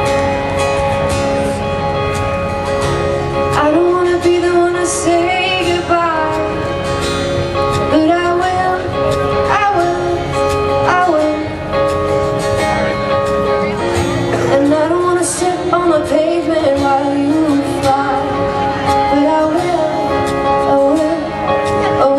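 A live band playing a pop song, a woman's voice singing the melody over held guitar chords; the singing comes in about four seconds in.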